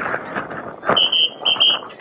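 Crowd of marching children with scattered knocks and clatter, then two short shrill whistle blasts about a second in.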